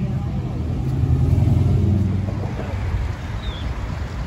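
A motor vehicle's engine passing close by on the street: a low rumble that swells to its loudest about a second and a half in, then fades away.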